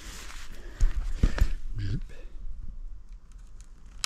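Rustling and a few dull knocks from handling a mountain bike close to a body-worn camera, the knocks about one second in, then quieter with faint ticks.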